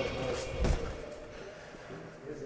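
A single dull thump about two-thirds of a second in, a boot stepping onto the baling machine's steel step, under faint voices.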